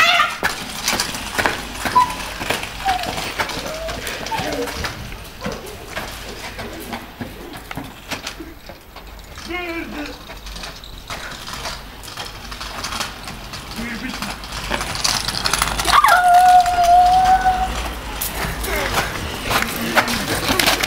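Boys shouting and calling out, with scattered clicks and scrapes on pavement; near the end one voice holds a long high note for about a second and a half.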